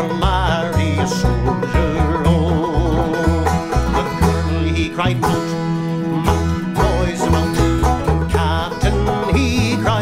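Instrumental break in a folk ballad: banjos pick the tune over deep bass notes, with a wavering melody line with vibrato above them.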